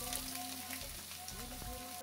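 Chopped onions sizzling steadily in hot coconut oil in a steel kadai, just after being tipped in.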